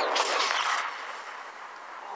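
Cartoon sound effect: a hissing whoosh that fades away over about a second.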